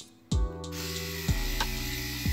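Rotary electric shaver running steadily, after a brief silence at the start, with soft background music.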